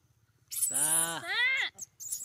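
Macaque monkey calling: two drawn-out whining cries about half a second in, the first rising and falling, the second rising.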